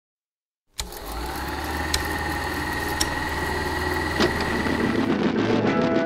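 Film projector starting up about a second in and running with a steady mechanical whirr and low hum, with a few sharp clicks along the way.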